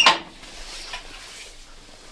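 A single sharp metallic knock right at the start, followed by faint handling noise.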